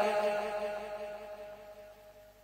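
A man's voice, its last word drawn out, trailing away through a long sound-system echo. It fades steadily over about two seconds.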